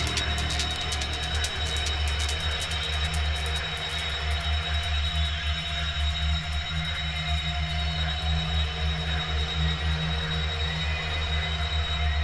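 Dark industrial techno from a DJ mix: a heavy, sustained bass under steady high ringing tones. A fast, crisp ticking percussion thins out after the first few seconds.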